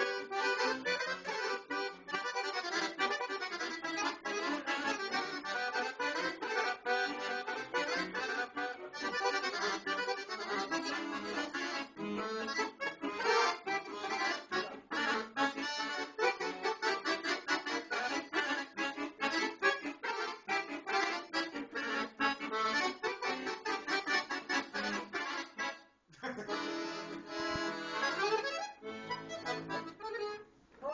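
Accordion playing a fast folk tune in quick, densely packed runs of notes. Near the end the playing stops abruptly for a moment, then starts again.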